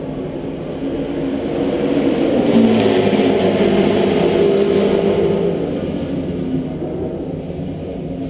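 A racing car engine running, growing louder about two seconds in and fading again after about five seconds.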